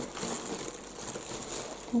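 Thin plastic bag crinkling and rustling as hands open it and reach in for cookies.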